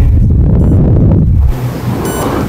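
Loud low rumble of wind-like noise on a microphone, close to full level, stopping suddenly about one and a half seconds in.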